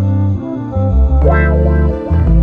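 Background music with a sustained, changing bass line; a brighter accent enters a little past the middle.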